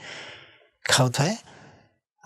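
A man's breathy exhale, like a sigh, trailing off over about half a second, then one short spoken word with a faint breath after it.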